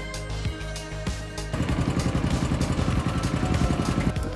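Background music, then about a second and a half in a small engine starts running with a fast, even chugging.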